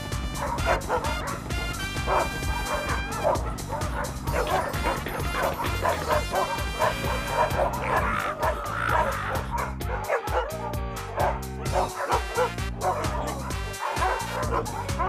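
A pack of cartoon dogs barking and yipping over background music with a steady beat.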